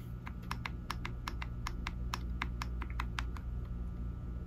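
Trigger of a Springfield Emissary 9mm 1911 pistol clicking in a quick, uneven run of about twenty light taps as it is pressed repeatedly against the grip safety, which is blocking it. There is a steady low hum underneath.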